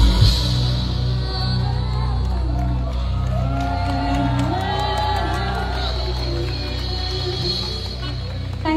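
Live band playing amplified music through PA speakers, with sustained low held notes, and whoops and cheers from the audience over it.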